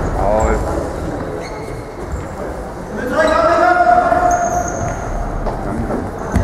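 Indoor football match in a sports hall: sneakers squeaking on the hall floor and the ball being kicked, with voices calling out and one long drawn-out shout about halfway through.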